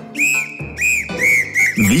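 A sports whistle blown in about five short blasts, each rising and falling slightly in pitch. A low steady hum comes in underneath about halfway through.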